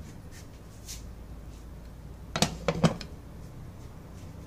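Glass pot lid with a metal rim set down on a simmering pot of broth, clinking sharply two or three times in quick succession about two and a half seconds in.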